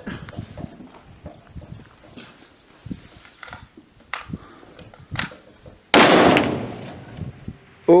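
A single rifle shot from a Desert Tactical Arms SRS bolt-action rifle in .260 Remington, fired once about six seconds in, its loud report trailing off over about a second and a half.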